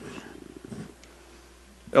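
Quiet pause in a council chamber's sound system: a faint, low indistinct rumble or murmur that fades within the first second, then room tone over a steady low hum.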